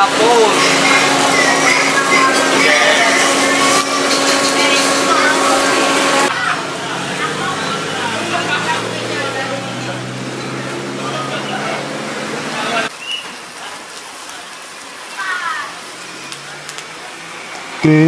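Charcoal satay grill with an electric blower fanning the coals: a steady motor hum over a dense hiss and crackle of burning charcoal and dripping fat. About six seconds in, the sound cuts to a quieter mix, and it drops lower again about two-thirds of the way through.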